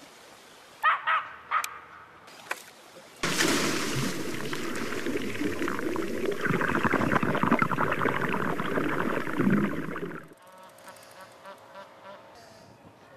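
A few short sharp chirps, then a dense rushing, rattling noise that starts abruptly and cuts off about seven seconds later, as a carp bait boat's hopper releases its load of boilies into the water.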